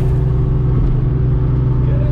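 Steady in-cabin drone of a Volkswagen Polo 16V cruising on a motorway, engine and road noise together, holding an even pitch and level.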